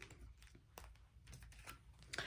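Faint, scattered light clicks and taps of tarot cards being picked up and handled.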